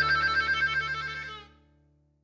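Closing bars of background music: a held chord with a fast flutter, fading out about one and a half seconds in.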